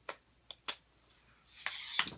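Telescoping selfie-stick tripod being handled: three sharp clicks in the first second, then a rushing slide as the pole sections are pulled out near the end.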